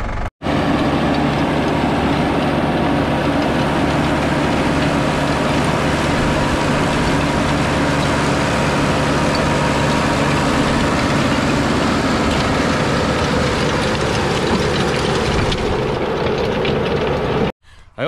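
New Holland tractor's diesel engine running steadily under load, driving a rear-mounted rototiller that churns through the soil. The sound stops abruptly near the end.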